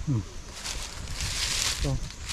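A man's short wordless vocal sounds: a falling 'mm' at the start and a rising one near the end, with a hissing rustle between them.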